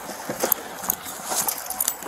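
Quick footsteps and clothing rubbing against a body-worn camera, heard as a few irregular knocks and scuffs over a rustling background.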